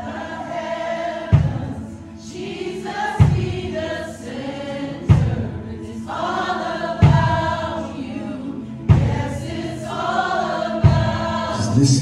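Live worship music: voices singing a slow song over a bass guitar, whose low notes are struck about every two seconds.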